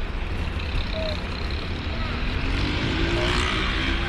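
Street traffic: a steady low rumble of vehicles, with one engine rising in pitch as it speeds up past in the second half.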